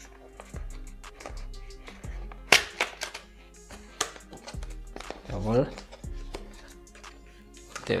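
A cardboard retail box being opened by hand, its stickers and end flap pulled back, with a few sharp clicks and paper rustles, the loudest about two and a half seconds in, over quiet background music.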